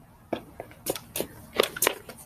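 About five short crunching rustles, unevenly spaced over two seconds.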